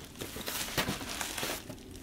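Bubble wrap around a vinyl record crinkling as the wrapped record is lifted and handled, in a few short crackles that grow quieter near the end.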